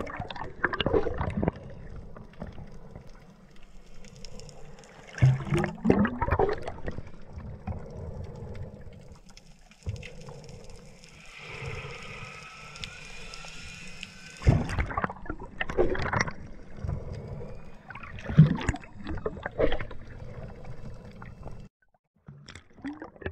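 Underwater: a diver's exhaled air bubbling out in four short, loud bursts, the puffs of air used to blow bubble rings, over a steady low underwater background.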